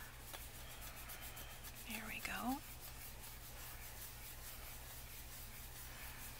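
Faint rubbing of fingers smoothing a freshly glued paper cutout down onto a paper tag. About two seconds in, a brief murmured voice sound is heard.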